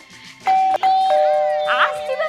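Electronic ding-dong doorbell chime: a higher tone sounds about half a second in, and a lower tone joins it a little later, both held steady.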